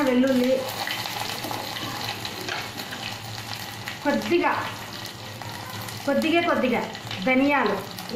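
Garlic cloves and seeds frying in hot oil in a small steel pot for a tempering, a steady sizzle.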